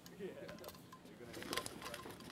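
Quiet handling of a metal hip flask, with a few small clicks as its screw cap is worked, the sharpest about one and a half seconds in, over faint voices.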